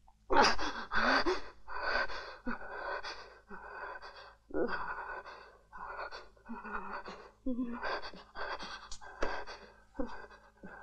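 A person breathing in quick, heavy gasps, about two a second, some of them voiced, as if out of breath or in distress.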